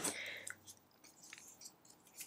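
Quiet handling noise: a few faint, short clicks and rustles as a sheet of cardstock and a pair of craft scissors are picked up and handled.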